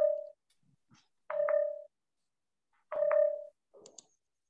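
A beep: a short, steady, mid-pitched tone sounding three times, roughly a second and a half apart, each with a click at its start.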